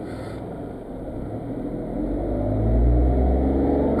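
Car engine and road noise heard from inside the cabin, growing steadily louder with a deepening low rumble over the last two seconds as the car picks up speed.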